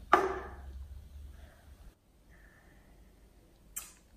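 A sharp knock as an aluminium drinks can is set down on a wooden table, with a short metallic ring that fades within about half a second, followed by faint handling of the glass.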